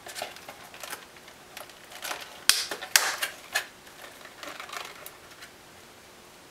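Clear plastic clamshell packaging crackling and clicking as it is pried open by hand, with two sharp snaps about halfway through, then it goes still near the end.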